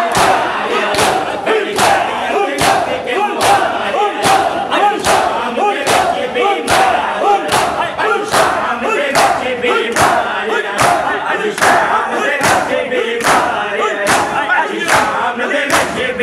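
Crowd of men doing matam, striking their bare chests with open palms in unison: sharp slaps a little over twice a second, over a loud mass of men's voices chanting and shouting.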